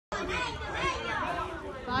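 Several people's voices talking over one another: spectators' chatter at the pitchside.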